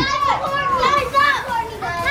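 Children's high-pitched voices, shouting and calling out as they play in a swimming pool.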